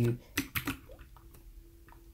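Three or four separate computer keyboard key presses, sharp single clicks spread over the first second and a half.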